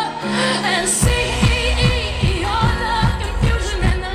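Live pop band with a woman singing lead into a handheld microphone over held low chords; a steady kick-drum beat comes in about a second in, at roughly two and a half beats a second.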